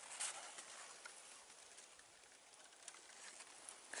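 Near silence: faint outdoor room tone with a soft rustle about a quarter second in.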